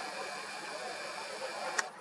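A camera's power-zoom motor whirs steadily as the lens zooms in, ending with a single click near the end.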